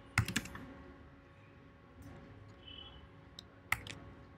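Computer keyboard keystrokes: a quick run of several clicks just after the start, then two more near the end, with a quiet pause between.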